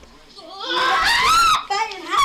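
A young woman screaming: one high-pitched scream about a second long that rises and then falls in pitch, beginning about half a second in, then a shorter cry near the end.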